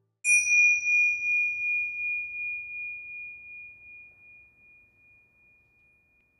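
A meditation bell struck once: a single high, pure ringing tone that fades slowly with a gentle wavering over about six seconds, marking the start of a relaxation break.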